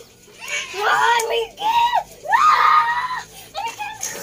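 Young children screaming in play: three loud, high-pitched shrieks in a row, the last and loudest about two seconds in, with a shouted "ayo" among them.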